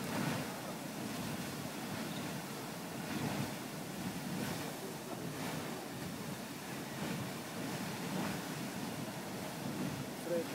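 Grand Geyser erupting: a steady rush of spouting and falling water and venting steam, swelling a little now and then.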